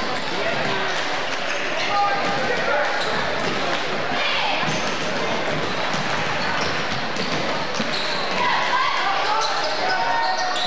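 Basketball game sound in a gymnasium: a steady mix of crowd and player voices, with the ball bouncing on the hardwood court.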